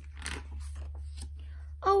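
A picture-book page being turned by hand: a brief paper swish about a quarter second in, then softer rustling, over a steady low hum.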